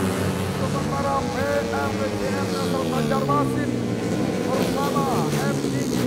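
Four-stroke 130 cc underbone racing motorcycles revving hard as a pack passes, their engine pitch climbing in short rising sweeps and falling away in a long drop as the bikes go by.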